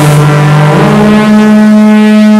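EMS Synthi AKS analog synthesizer sounding a loud droning oscillator tone that slides up in pitch about a second in and then holds steady. A layer of hiss behind it fades away.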